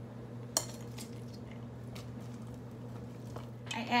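Wooden chopsticks clink once, sharply, against a stainless steel stockpot about half a second in, followed by a few faint taps, all over a steady low hum. A woman starts speaking near the end.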